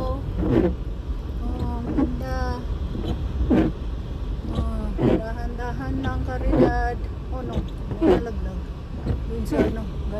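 Car driving slowly on a snow-covered road, heard from inside the cabin as a steady low rumble. The windshield wipers sweep across the glass at an even beat, about once every one and a half seconds.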